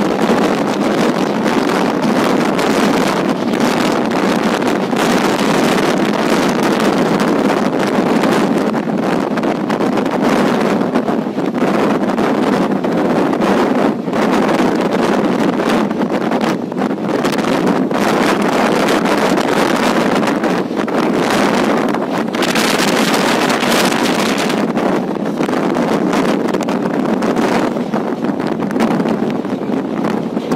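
Passenger train running at speed, heard from an open coach door: a steady rumble of wheels on the rails, with wind buffeting the microphone.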